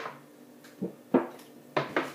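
Drinking from a plastic gallon jug and setting it back down: a few short, soft knocks and swallows in the second half.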